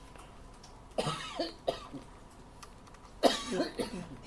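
A man coughing twice, briefly about a second in and again near the end, with a few faint computer keyboard clicks between.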